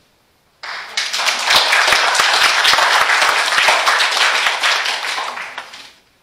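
Congregation applauding: hand clapping starts suddenly about half a second in, runs for about five seconds and fades away near the end.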